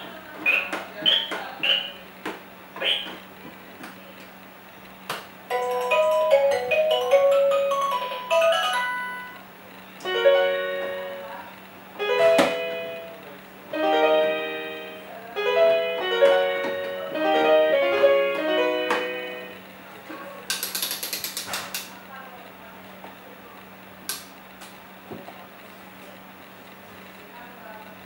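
Electronic tunes and sound effects from a Winfun Disney Pound 'n Roll Musical Table as its piano keys are pressed: a few short pitched sound effects at first, then a tinkly melody, then a string of short two-note phrases with the clicks of the keys. A brief rattling burst follows near the end.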